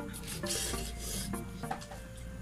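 A person slurping instant noodles: one long, noisy slurp about half a second in, over background music.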